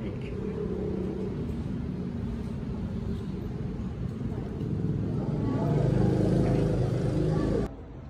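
Indistinct voices over a low, steady rumble, cutting off suddenly near the end.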